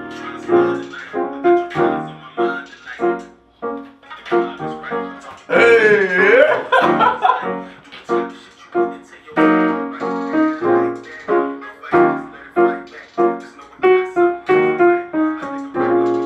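Digital piano played with repeated chords and quick runs of notes. About five and a half seconds in, a voice joins over it for a couple of seconds, wavering in pitch.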